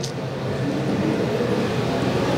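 Steady background hum of a large convention hall, with the faint murmur of distant voices and no one speaking close to the microphone.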